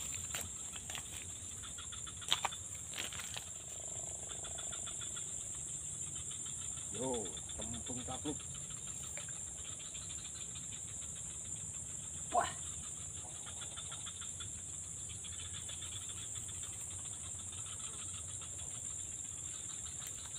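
Insects chirring steadily at a high pitch, with a couple of short clicks about two seconds in and a brief sharp sound about twelve seconds in.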